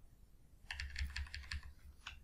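Computer keyboard keys tapped in a quick run of about a dozen keystrokes, starting about two-thirds of a second in.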